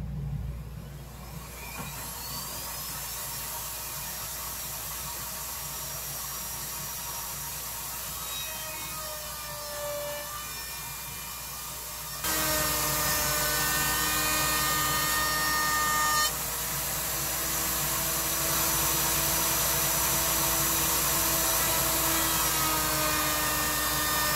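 Table-mounted router running with a chamfer bit: its whine rises as it comes up to speed in the first seconds. About twelve seconds in it gets louder as the cabinet door's edge is fed past the bit, cutting a quarter-inch chamfer.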